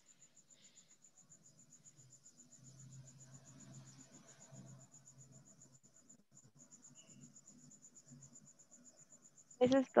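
A cricket chirping in a fast, even, high-pitched trill, faint under a low hum, with a soft murmur in the middle. A voice starts near the end.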